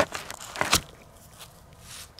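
Handling noise of a brass bullet being worked out of the fabric of a soft body armor panel by hand: two sharp scratchy, crackling sounds, one right at the start and one under a second in, then faint rustling.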